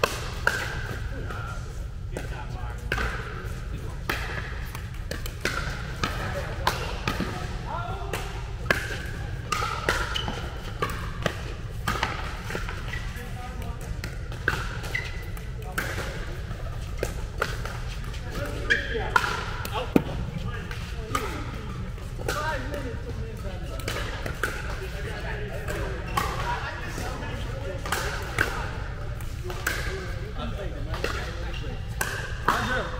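Pickleball paddles striking a hard plastic ball during doubles rallies, sharp pops at irregular intervals, echoing in a large indoor hall.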